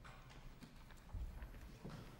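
A hush between movements of a string quartet with no music playing: faint scattered knocks and rustles of people shifting in a concert hall, with a low thud about a second in.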